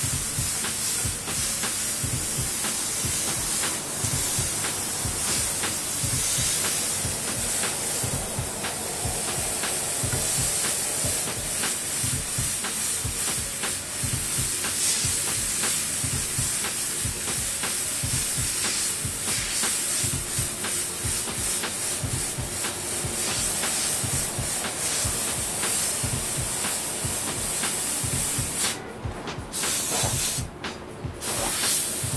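Airbrush spraying paint onto a T-shirt: a steady hiss broken by frequent short pulses. The hiss stops near the end.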